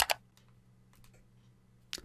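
A sharp click right at the start, followed by a few faint ticks over quiet room tone with a low steady hum.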